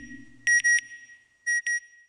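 Closing logo sound effect: short, high electronic beeps like satellite telemetry. A group of three comes about half a second in and a fainter pair near the end, over the fading tail of a deep boom.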